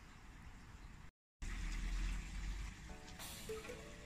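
Faint background hiss, cut by a moment of dead silence just over a second in. Then a louder steady outdoor hiss with low rumble, and soft background music with held notes coming in about three seconds in.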